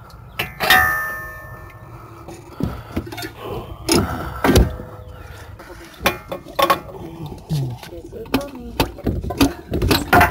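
Metal hand tools clinking and knocking against a car's front steering knuckle and brackets, with one sharp metallic clang that rings for about a second near the start.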